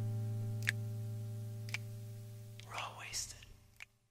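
The end of a recorded rock song: a sustained low chord slowly fading out, with a faint tick about once a second. About three seconds in a short whispered voice comes over it, then the track cuts to silence just before the end.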